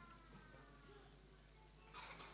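Near silence: room tone, with a faint squeak falling in pitch over about a second and a half.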